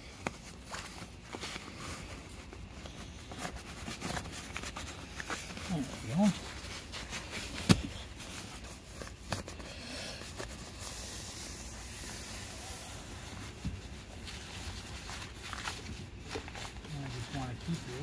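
Rustling and rubbing of a CORDURA seat cover's fabric as it is pulled and tucked over a truck's rear seat cushion by hand, with small crackling ticks throughout. There is one sharp click a little before the middle.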